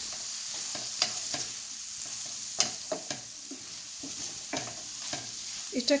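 Chopped onions and peppers sizzling in a stainless steel sauté pan while a wooden spoon stirs them. The spoon scrapes and knocks irregularly against the pan over the steady hiss of the frying.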